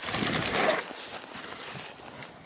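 Mountain bike rolling over dry dirt: knobby tyres crunching and crackling on the loose, sun-hardened surface, loudest in the first second and easing after.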